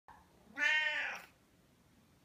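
A Siamese cat meowing once: a single high meow of under a second, starting about half a second in.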